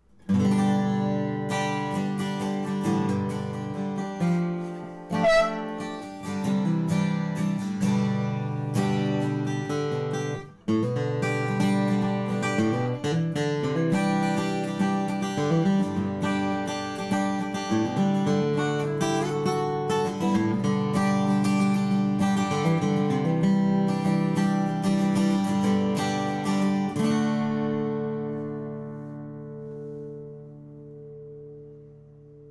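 Folk acoustic guitar with a spruce top and bubinga back and sides, played solo with picked notes and strummed chords. It pauses briefly about ten seconds in. The final chord rings out and fades over the last few seconds.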